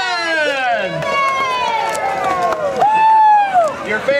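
Audience, many of them children, cheering and yelling. Several high voices overlap, with one loud drawn-out yell near the end.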